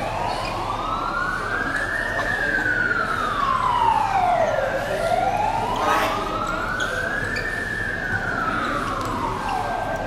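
An emergency-vehicle siren wailing in slow sweeps, rising and falling in pitch twice, each rise and fall taking about five seconds.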